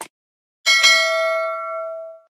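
A short mouse-click sound effect right at the start. About two-thirds of a second in, a bright notification-bell chime sounds: it is struck twice in quick succession, then rings on and fades out.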